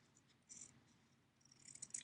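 Near silence, broken by faint, short rustles of a felt sheet being handled, about half a second in and again near the end.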